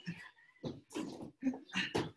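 Two wrestlers grappling on a mat: short bursts of hard breathing and grunts, several a second, with bodies scuffing on the mat.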